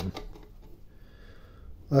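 Faint handling noise from gloved hands fastening a battery cable onto the inverter's DC terminal. It is low and even, with no distinct clicks.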